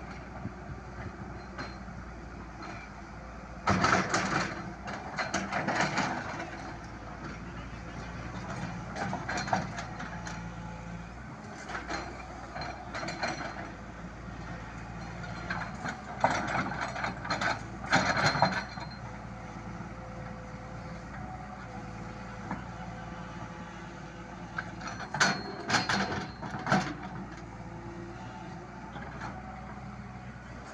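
Tata Hitachi hydraulic excavator working: its diesel engine runs steadily, with bursts of clanking and scraping several times as the arm and bucket dig and swing.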